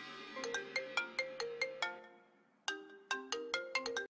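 Mobile phone ringtone: a quick run of short, bright notes, about five a second, played twice with a short gap between. Background music fades out just as it begins.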